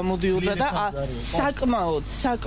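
A woman talking: speech only, in an interview.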